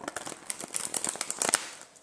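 A deck of tarot cards being riffle-shuffled by hand: a fast, dense rattle of card edges flicking and slapping together for about a second, thinning out near the end.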